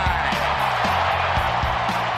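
Outro music with a beat and bass under a crowd cheering from a baseball radio call of a hard-hit ball.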